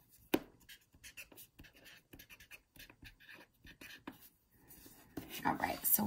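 Green marker writing a name on a paper worksheet on a clipboard: a run of short, faint scratching strokes. A single sharp click comes about a third of a second in.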